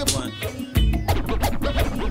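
DJ scratching a vinyl record on a turntable by hand, quick back-and-forth strokes that sweep up and down in pitch, over a playing beat with heavy bass.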